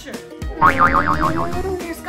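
A comedy sound effect: a fast-wobbling, boing-like tone lasting about a second and a half, starting about half a second in, over background music.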